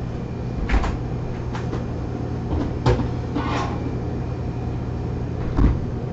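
A few short knocks and clunks of a kitchen door or cupboard being opened and shut, over the steady low hum of a restaurant kitchen's exhaust hood.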